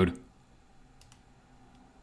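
A few faint computer mouse clicks, about a second in, in an otherwise very quiet room.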